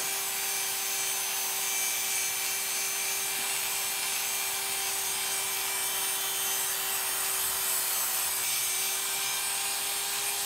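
Heavy-duty detachable-blade hair clipper (Oster) running with a steady hum, its number 1½ blade cutting hair against the grain up the back of the head.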